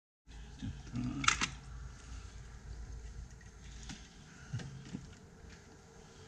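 Objects being handled on a wooden shelf: a sharp double knock about a second in, then a few softer knocks, over a low handling rumble.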